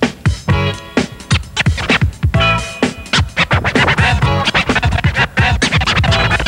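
Vinyl record being scratched by hand on a turntable: rapid back-and-forth scratches chopped into short, sweeping stabs of a sample. The scratches come faster and denser in the second half.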